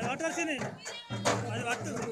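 High-pitched voices with gliding pitch over music at a crowded gathering, the music's low band dropping out for about a second in the middle.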